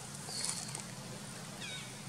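Short, high-pitched animal calls: a brief whistled note just under half a second in, then a quick falling call near the end, over a steady high hiss of outdoor background.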